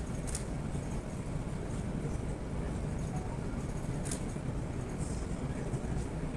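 Steady low rumble of room background noise, with two brief sharp clicks, one just after the start and one about four seconds in.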